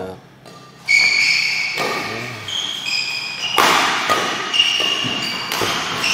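Badminton doubles rally: a string of sharp racket hits on the shuttlecock, mixed with high-pitched squeaks of players' shoes on the court floor.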